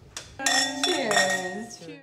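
Tableware clinking and ringing, with indistinct voices in a room behind it.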